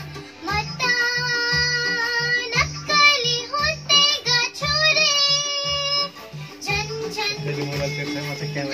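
A young girl singing a Nepali song with long held notes over a backing track with a steady bass pulse, heard over the control-room studio monitor speakers.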